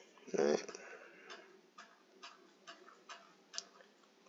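Short, evenly spaced clicks, about two a second, from a computer mouse as the document is scrolled. A brief voiced murmur comes about half a second in and is the loudest sound.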